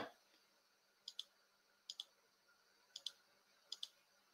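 Faint computer mouse clicks over near silence: four quick double clicks spaced about a second apart.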